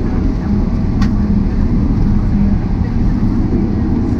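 Cabin noise of a Boeing 777-300ER taxiing: a steady low rumble from its GE90 engines and rolling gear, with a single sharp click about a second in.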